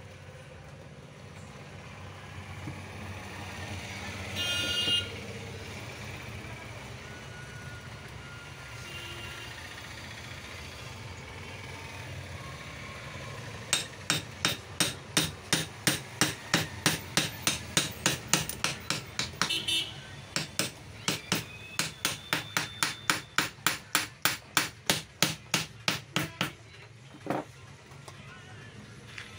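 A quick, even series of hammer blows, about three a second with a short break partway, on the router's motor assembly: seating the armature and its new bearing into the motor housing.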